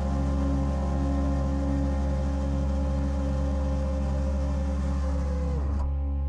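Ambient outro music: sustained held tones over a pulsing low line, with one tone sliding down in pitch just before the end as the upper part drops away.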